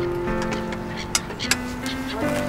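Background score music of softly held, sustained chords, with two short sharp clicks a little past one second in.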